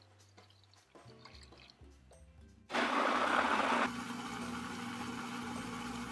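Food processor switched on about two and a half seconds in, its motor running steadily with a hum and the whir of sweet potato, butter and milk being puréed. It is louder for the first second, then settles to an even level.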